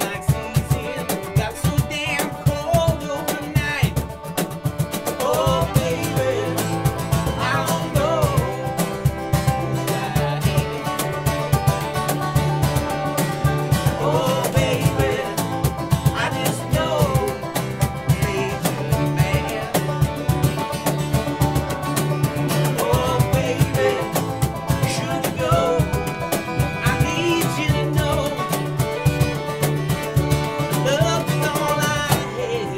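An acoustic bluegrass band playing a tune: a bowed fiddle with sliding, wavering notes over picked banjo, strummed acoustic guitar and a steady upright bass line.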